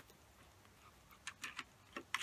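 Near silence, then a few faint clicks and taps in the second half: a dog's paws striking a wall-mounted light switch to flip it off.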